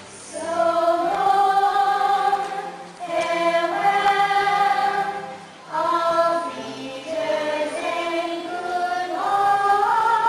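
Music with singing voices: phrases of long held sung notes, each a few seconds long, separated by brief pauses.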